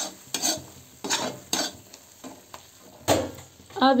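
Perforated steel spatula stirring and scraping thick onion-tomato masala that is frying in oil in a metal kadai, in about half a dozen uneven strokes over a faint sizzle.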